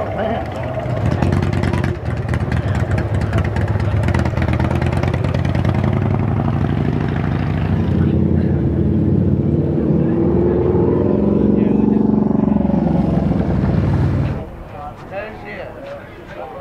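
Motorcycle engines running close by, the pitch rising and falling as they rev, then cutting off suddenly near the end.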